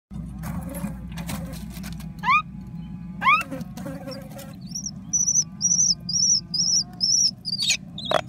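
Common myna nestling begging in the nest: scratchy rustling bursts, then two loud rising calls about a second apart, then a run of short, high chirps at about three a second.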